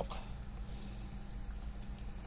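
Pot of chicken drumsticks simmering quietly in broth, a soft steady bubbling, with a low hum underneath.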